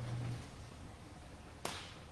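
Quiet room with a low steady hum that stops shortly after the start, then one sharp click near the end.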